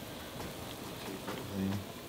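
Pot of fish broth at a rolling boil: steady bubbling with faint pops. A short voiced sound comes about a second and a half in.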